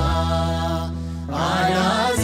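A man chanting a prayer in Ethiopian Orthodox style. He holds a long note, pauses briefly about a second in, then starts a new rising phrase, over a steady low held accompaniment note.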